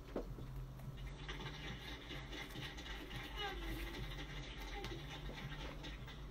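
A vinyl record playing in the room, heard faintly through a phone microphone: surface noise with a voice-like sound from the record coming in about a second in.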